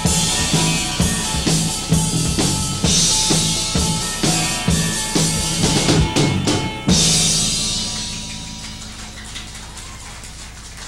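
A live rock band's drum kit and bass guitar playing a steady, driving beat. About seven seconds in, one final loud hit rings on and slowly fades as the song ends.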